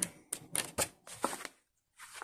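Paper pages of a colouring book being turned and handled by hand: a few short, crisp paper flicks and rustles in the first second and a half.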